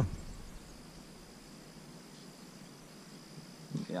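A faint, steady, high-pitched insect drone carries through a quiet outdoor lull.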